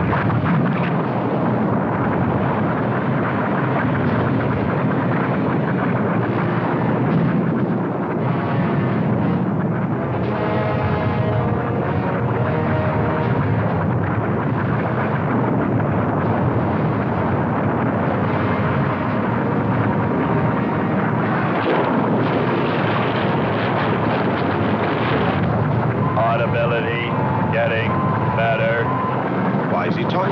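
Continuous loud rumble and hiss of an erupting volcano and flowing lava, a sound effect on an old film soundtrack.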